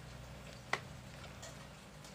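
A single sharp click from handling the clamp meter and its test leads, over a faint steady low hum.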